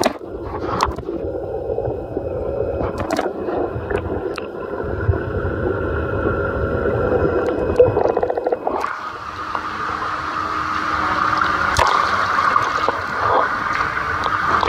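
Pool water heard through a submerged camera: muffled gurgling and sloshing with scattered small clicks. The sound turns brighter and more hissy about nine seconds in.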